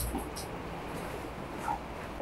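Whiteboard marker squeaking in short strokes against the board, mostly in the first half-second, with fainter squeaks later, over a low room hum.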